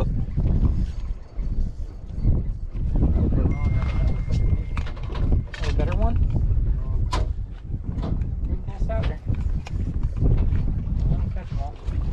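Wind rumbling on the microphone, with indistinct men's voices scattered throughout.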